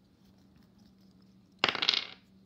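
A pair of dice rolled onto a table, clattering in a quick burst of rapid clicks about a second and a half in.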